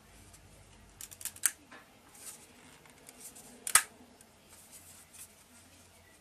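Sharp clicks and ticks of a MOD-t 3D printer's removable print plate being handled and seated on the printer bed, with one louder snap a little before the four-second mark.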